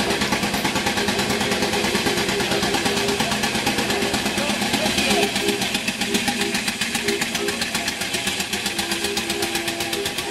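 Small vintage car's engine running with a fast, even beat as the car drives slowly over cobblestones.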